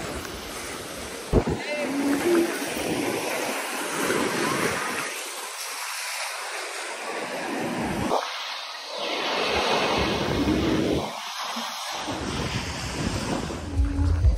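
Small surf breaking and washing up on a sandy shore, with wind on the microphone and faint voices.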